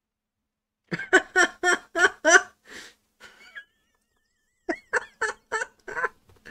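A man laughing heartily in two bouts of quick 'ha-ha' bursts, about four a second. The first bout starts about a second in and the second comes near the end.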